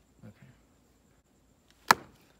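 A single hard mallet blow near the end, smashing a scorpion against a concrete block.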